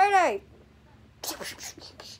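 A child's short vocal cry whose pitch rises and then falls, then, from a little over a second in, a quick string of breathy, hissing mouth sound effects voicing a plush-toy fight.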